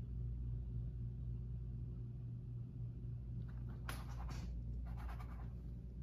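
Low steady room hum, with a few short scratchy strokes of a paintbrush on canvas past the middle.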